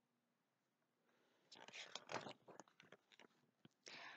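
Faint rustling and a few soft clicks about a second and a half in, as the page of a hardcover picture book is turned; otherwise near silence.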